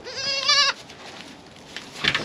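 Kiko goat bleating once near the start: a short, wavering call of about half a second.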